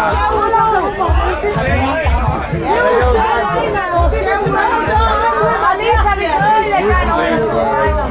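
Several people talking at once over background music with a steady low beat, about one beat a second.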